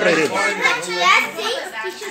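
Several voices talking over one another, children's voices among them.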